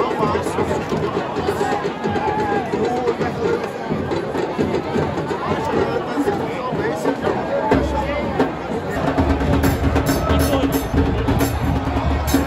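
Football supporters' crowd singing a chant together in the stands, with bass drums from the fans' drum section coming in strongly about eight seconds in.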